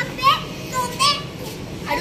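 Two short, high-pitched calls from a young child, about three quarters of a second apart.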